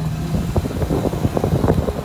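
A car driving on a rough dirt road: a low engine hum and road rumble, with irregular gusts of wind buffeting the microphone.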